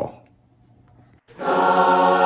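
Choir singing a sustained chord, starting suddenly about a second and a half in after a short, near-quiet gap.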